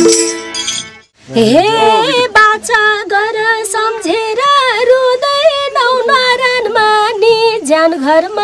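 A Nepali dohori band of harmonium and madal drum plays, then cuts off about a second in. A woman then sings a dohori verse almost unaccompanied, a high melody that bends and wavers in pitch, with a few light percussion taps behind her.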